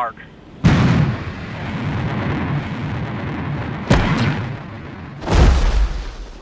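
Sound effect of the lander's retro rockets firing: a sudden loud blast about half a second in that settles into a steady rushing roar. A sharp crack comes near four seconds in, and a heavy low boom shortly before the end.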